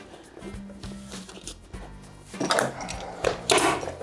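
Upholstery fabric being pulled and stretched by hand over a chair backrest, rustling in short bursts in the second half, over soft background music.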